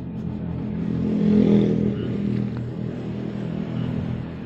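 A motor vehicle engine running, a steady low hum that swells to its loudest about a second and a half in, then eases back.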